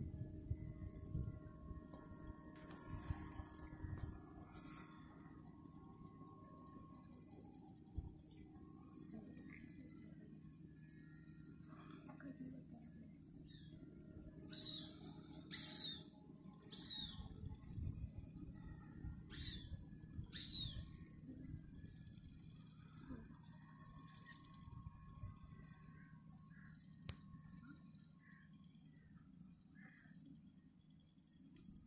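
Faint bird calls over a low steady hum: about five short calls sliding downward in pitch come in quick succession in the middle, with a few fainter chirps scattered around them.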